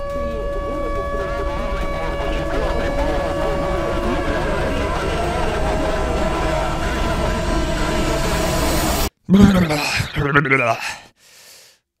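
A dramatic sound-effect build-up: a dense drone with steady high tones and a jumble of indistinct voices swells louder for about nine seconds, then cuts off abruptly. A brief vocal sound follows before it falls quiet.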